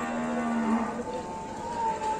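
Cattle mooing: a low call that ends about a second in, followed by a higher, steadily held call.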